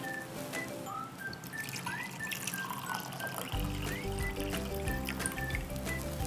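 Water trickling as it is poured from one drinking glass into another, under background music whose bass line comes in about three and a half seconds in.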